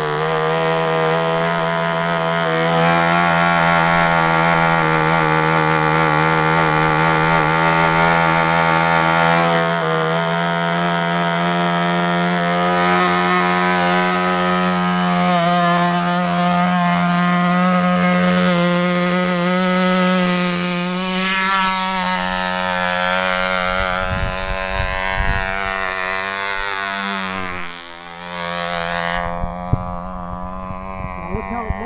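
OS Max-S .35 glow engine on a control-line model plane, running at high speed on the ground with a steady, high-pitched whine. Its pitch shifts slightly about ten seconds in and again past twenty seconds. It briefly dips in loudness near the end and loses some of its top end.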